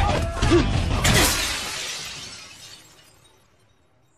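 Street brawl: a clatter of blows and impacts, then a loud crash of breaking glass about a second in, whose ringing fades out to near silence.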